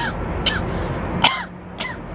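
A woman coughing into her hand, four short coughs in under two seconds.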